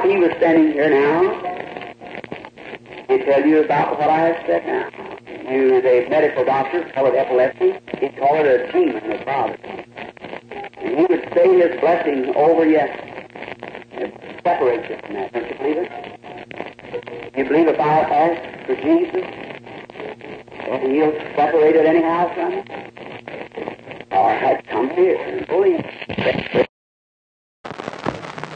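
A man preaching, heard on an old, muffled tape recording.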